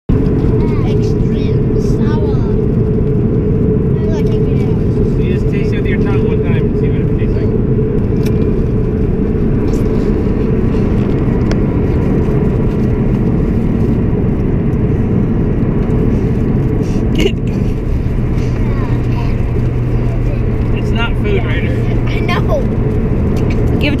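Steady low road and engine rumble of a moving car, heard from inside the cabin, with faint voices now and then.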